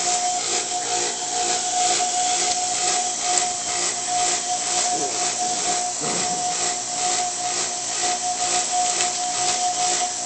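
Steady background hiss with a steady mid-pitched tone running through it, pulsing faintly a few times a second.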